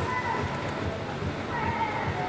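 Indistinct voices in the background, with short high-pitched wavering calls near the start and again near the end.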